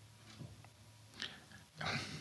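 Faint room tone with a steady low hum and a few soft clicks, then a man's short breath drawn in near the end, just before he speaks again.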